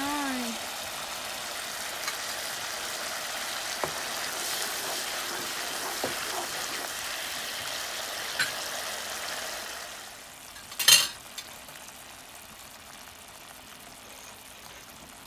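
Thick, creamy cauliflower-roast gravy bubbling and sizzling in a pan, a steady hiss with a few faint ticks. The hiss drops lower about ten seconds in, and a moment later comes a short, sharp clatter, the loudest sound.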